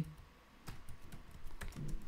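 A few scattered computer keyboard keystrokes, light clicks at an uneven pace.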